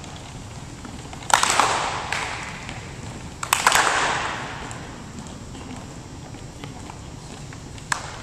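A group of people stepping and stomping on a wooden gym floor: two loud bursts about two seconds apart, each ringing on in the echoing gym, and a sharp click near the end.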